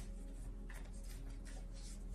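A deck of tarot cards being shuffled by hand to draw another card: a run of faint, quick rustles.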